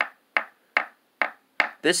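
A metal screwdriver shaft taps the plastic truck of a Tony Hawk Signature Series skateboard five times, about two and a half taps a second. Each tap is a short click that dies away at once. The dull, unringing sound marks the truck as plastic rather than aluminum.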